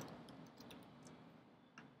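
Near silence with a few faint computer keyboard clicks as code is typed.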